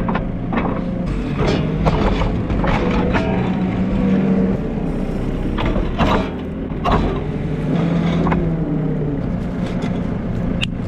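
Farm machine's diesel engine running, its note rising and falling as the pallet forks lift and carry a large field stone, with several metallic knocks and clanks from the forks and stone.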